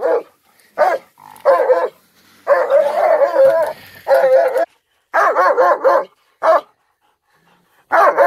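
Young German shepherd barking at a cornered raccoon, in repeated bursts with a longer run of rapid barks in the middle, then falling quiet for the last second or so.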